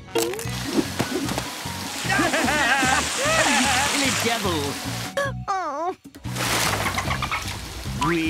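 Upbeat cartoon background music with a steady bouncing bass line, with cartoon characters' voices over it and water splashing.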